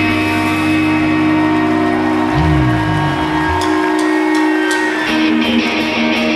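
Live post-hardcore band: electric guitars held ringing on a sustained chord, with a low bass slide about two and a half seconds in. Near the end a guitar starts strumming a new riff, the start of the next song.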